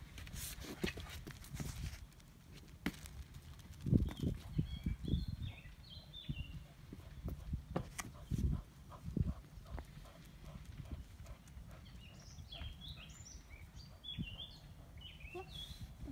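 Outdoor garden ambience with a steady low rumble and a few soft thumps. Birds sing short, high chirping phrases in two spells, in the middle and again near the end.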